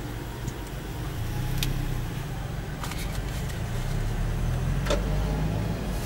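Car engine and road noise heard from inside the cabin as the car pulls away and gathers speed, its low hum growing steadily louder. A few light clicks come over it.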